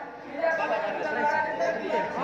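Speech only: people talking, with no other sound standing out.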